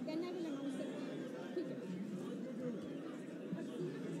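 Babble of many people talking at once, overlapping voices with no single speaker standing out, steady throughout.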